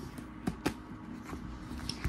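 Handling noise from a spiral-bound paper journal being lifted and moved by hand: two light clicks about half a second in, a quarter second apart, and a few fainter taps and rustles after.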